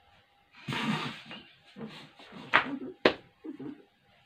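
Muffled laughing and wordless vocal sounds from people whose mouths are stuffed with marshmallows, with two sharp, breathy bursts near the end.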